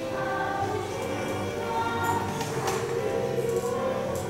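Background music with a choir singing slow, sustained notes.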